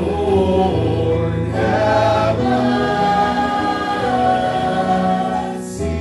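Church choir singing with sustained instrumental chords underneath, the harmony changing every second or two.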